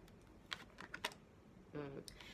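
A few faint, light clicks in quick succession, about four within a second, with a woman's voice starting near the end.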